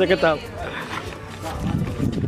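A man's loud, drawn-out shout that breaks off about half a second in, followed by quieter voices of a group and outdoor noise.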